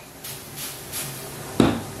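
Steak sizzling in a hot frying pan, a steady hiss, with a short knock about one and a half seconds in.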